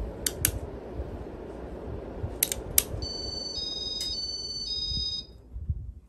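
Casablanca Spirit of Saturn ceiling fan running with a steady whoosh and hum, with a few sharp clicks. About three seconds in comes a short electronic tune of beeps. Just after five seconds the fan's sound drops away as the fan and its light are switched off.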